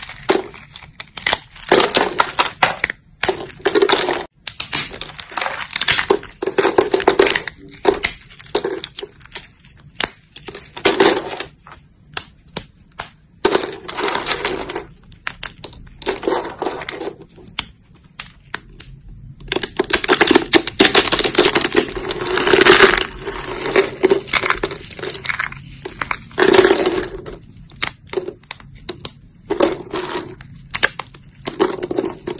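Thin plates of dry soap snapped and crushed between the fingers: rapid, crisp cracks and crunches in irregular spells with short pauses between them, busiest about two-thirds of the way through.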